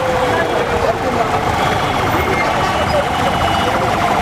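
Loud, busy street traffic with a sustained wailing tone that slides slowly down in pitch over the first couple of seconds, then holds with a fast flutter.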